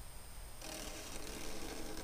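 Felt-tip marker drawing a straight line on paper: a faint, steady scratchy squeak of the tip dragging across the sheet, starting about half a second in.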